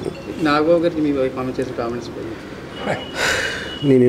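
A man's voice speaking in short bursts, with a brief steady high tone a little under three seconds in.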